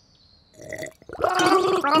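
A cartoon character's voice gargling a mouthful of milk: a pitched, bubbling, wavering vocal sound that starts about a second in, after a brief near silence and a short faint sound.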